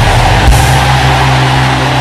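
A large congregation praying and crying out aloud all at once, a steady wash of many voices, over a held low instrumental chord.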